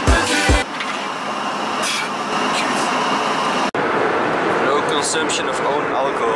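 Music with a steady beat that stops just under a second in, giving way to the steady rushing noise inside an Airbus A319/A320 airliner cabin in flight, with faint voices and an abrupt cut a little past halfway.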